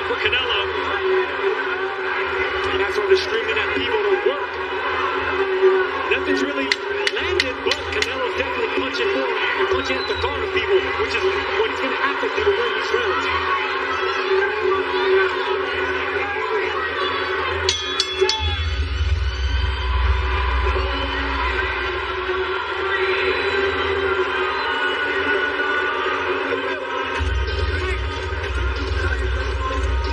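Arena crowd noise with many voices shouting and chanting, mixed with music. A few sharp knocks come about seventeen seconds in, and then a deep bass beat starts.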